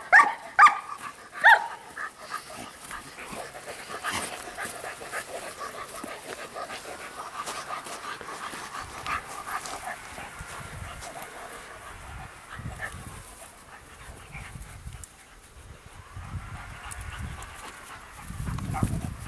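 Shepherd dog barking three times in the first second and a half, then quieter, steady panting.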